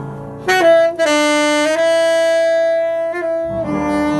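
Saxophone playing live: a loud held note enters about half a second in and is sustained, stepping in pitch, for nearly three seconds. Quieter accompaniment comes back in underneath near the end.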